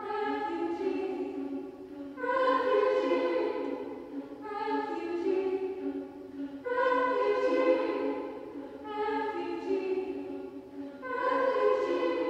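Women's choir singing a cappella, repeating the word "refugee" in overlapping phrases that swell and fade about every two seconds.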